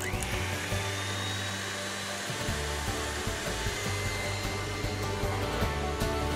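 KitchenAid Artisan stand mixer running with its wire whip, whipping cream toward stiff peaks. Its motor whine rises as it speeds up in the first second, then holds steady.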